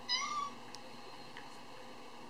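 A kitten gives a single short, high meow right at the start that rises slightly and then falls.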